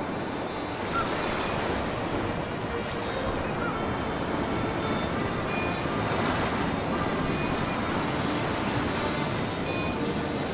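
Ocean waves washing, a steady surf noise, with faint music under it.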